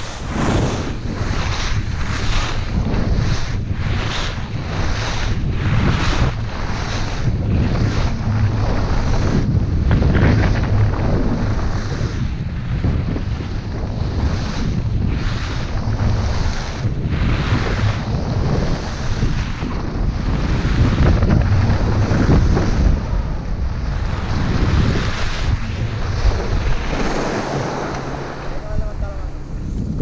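Wind noise buffeting the camera microphone while skiing fast, with the rhythmic scrape of ski edges biting into groomed snow on short linked turns. The scrapes come about one and a half a second at first and grow less regular after about twelve seconds.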